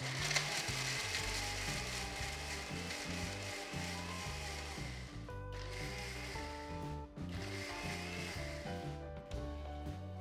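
Electric mixer grinder with a stainless-steel jar grinding a masala paste, run in pulses: a long run, two short stops about five and a half and seven seconds in, then it stops near the end. Background music plays throughout.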